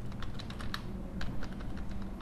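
Typing on a computer keyboard: a run of quick, uneven keystroke clicks.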